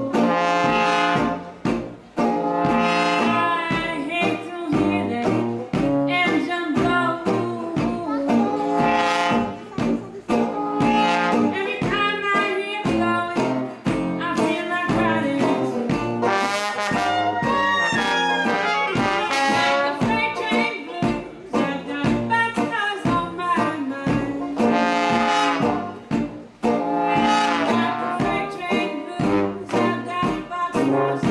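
Traditional New Orleans jazz band playing live: trombone and cornet lines over a sousaphone bass and strummed resonator guitar, with a woman singing the blues vocal.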